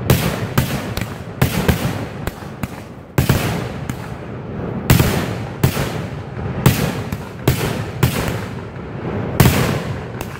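Aerial fireworks launching from the ground at close range: a run of sharp launch bangs, some about half a second apart and some over a second apart, each trailing off in a hiss as the shot climbs.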